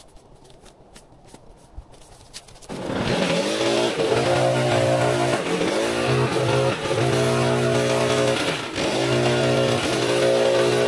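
Gas backpack leaf blower running at high speed, starting abruptly about three seconds in; its steady engine tone wavers about once a second.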